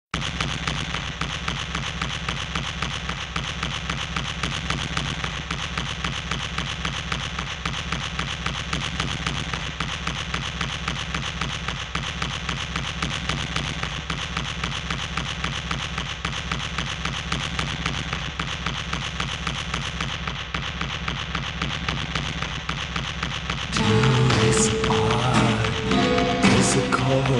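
Music: a fast, steady stream of clicks over a low pulse. Near the end it grows louder as bass notes and a held tone come in.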